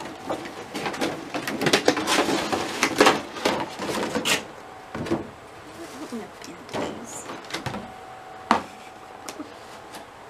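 Cardboard box and packaging rustling, scraping and clicking as a large vinyl Funko Pop figure is taken out of its box. The handling is busiest in the first half, thins to scattered clicks after that, and there is one sharp knock late on.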